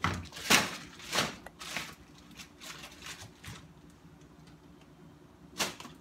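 Plastic bags of frozen food rustling and crinkling as they are handled and moved about in a freezer drawer, with a few brief swishes in the first two seconds and one more near the end.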